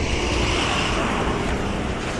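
Steady vehicle noise at a bus station: a low engine rumble under a constant hiss, with no single event standing out.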